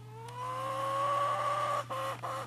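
An animal trapped in a wire cage trap, its teeth caught in the wire, gives one long whining cry that rises slightly in pitch and breaks off near the end.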